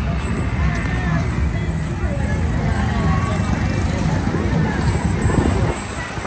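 Street noise in a passing procession crowd: motor vehicles running close by, with people's voices mixed in.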